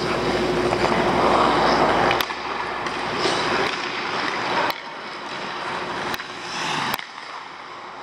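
Ice-skate blades gliding and scraping on rink ice, loudest in the first two seconds and then easing, with a few sharp clicks scattered through it.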